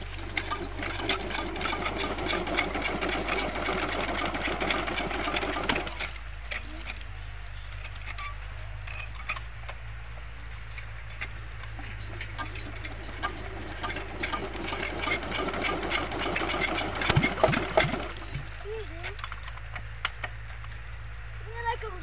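Water poured into the priming inlet of an old Kirloskar diesel water pump, splashing and gurgling as the pump is primed before starting. It comes in two spells of a few seconds each, with a rapid clatter over it.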